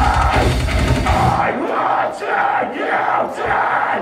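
Live metalcore band, distorted guitars and drum kit, playing loudly, heard through a phone's microphone in the crowd. About a second in, the bass and drums drop away, leaving a thinner mid-range sound, and the full band crashes back in at the very end.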